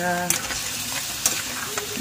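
Pork meat and bone pieces sizzling and frying in a wok while a spatula stirs them, with a few short scrapes and clicks of the spatula against the pan.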